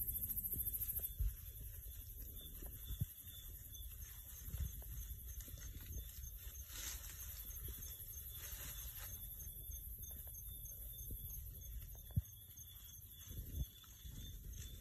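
Night insects, likely crickets, trilling steadily in a high, finely pulsing chorus with a faster ticking chirp beneath it, over faint low rumble and a few soft clicks.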